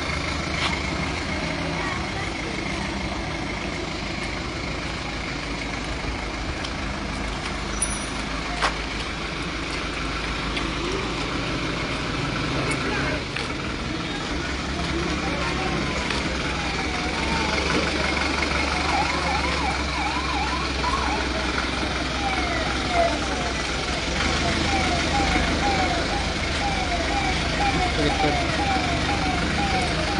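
Force Traveller ambulance's diesel engine idling steadily. About two-thirds of the way in, its electronic siren starts a quick repeating up-and-down wail that carries on to the end.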